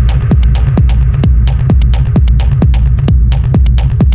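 Techno: a steady four-on-the-floor kick drum at a little over two beats a second over a deep bass line, with hi-hat ticks between the kicks.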